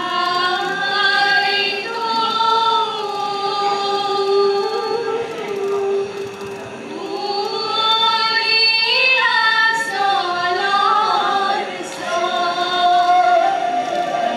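Voices singing together in long, held, gliding notes, a choir-like chorus in three drawn-out phrases with short breaks about six and a half and twelve seconds in.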